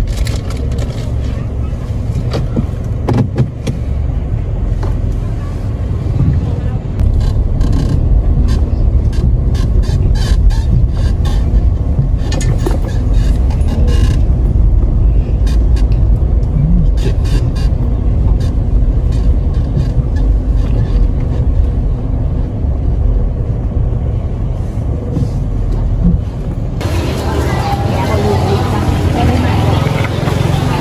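Outdoor ambience dominated by a heavy, uneven low rumble, with voices in the background and scattered clicks. About 27 s in the sound changes to nearer talk.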